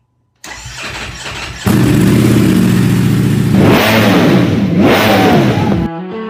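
An engine sound effect: a rush of noise builds, the engine catches with a sudden jump in level about a second and a half in and runs steadily, then is revved up and down a few times and cuts off abruptly near the end.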